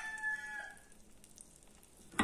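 A rooster crowing in the background, the long held last note of its call ending about a second in.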